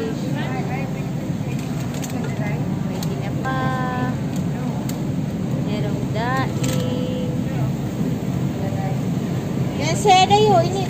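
Supermarket ambience: a steady low hum from the refrigerated display cases, with other shoppers' voices in the background.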